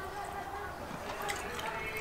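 A man chewing a mouthful of juicy grilled lamb, with soft, wet mouth sounds.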